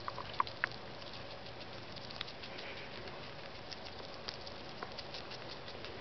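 Pet rat chewing a green bean: a run of small crisp nibbling clicks, with a few sharper crunches in the first second.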